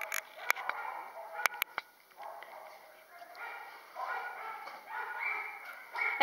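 Faint dog barks and yips, mixed with faint voices, and a few sharp clicks.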